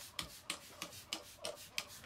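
A run of short rubbing or scraping strokes, about three a second, fairly quiet.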